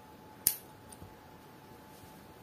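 Scissors snipping through a yarn tail once, a single sharp click about half a second in, followed by a fainter tick about a second in.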